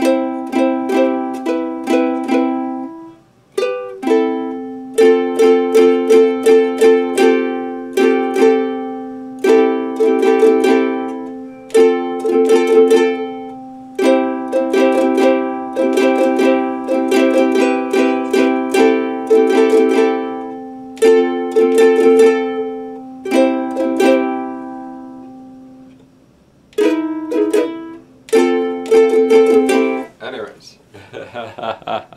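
Ukulele strummed in a steady rhythmic chord pattern. It breaks off briefly a few seconds in, and again near the end, where a chord rings out and fades before the strumming resumes.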